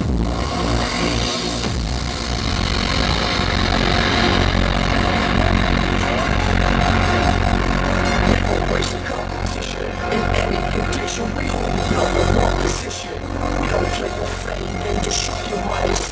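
Loud electronic dance music from a DJ set over a festival sound system, with a steady heavy bass. A noise sweep rises in pitch over the first few seconds.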